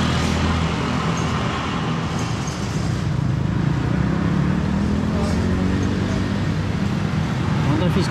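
Street traffic: motorbike and car engines with steady road noise, heard while riding along in an open cycle rickshaw.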